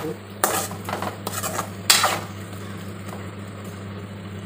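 Metal spoon scraping and stirring halved brinjals, shallots and garlic in hot oil in a metal kadai: a few strokes in the first two seconds, the loudest near two seconds in, then a light sizzle of the frying vegetables.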